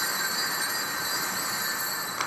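A steady high-pitched electronic whine made of several thin tones over a hiss, typical of an amplified sound system with a channel open.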